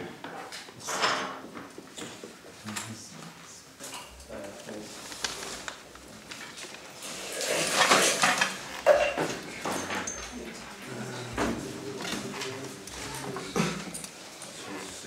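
Scattered clinks, taps and rattles of tools and small electronic parts being handled on a workbench, with a louder scraping, rustling stretch about seven to eight and a half seconds in. Faint voices murmur in the background.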